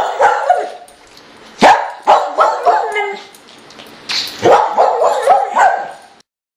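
A dog barking and yipping in three bouts, the longest near the end.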